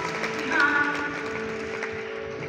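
A live band playing a slow song with acoustic guitar and keyboards, heard from a distance in the audience, with notes held and gliding through the stretch.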